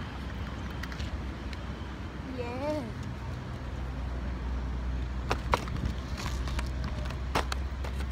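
A hooked bluegill is landed on a fishing rod, with a few sharp knocks in the second half as the fish and tackle swing in, over a steady low rumble. A short wavering vocal sound comes about two and a half seconds in.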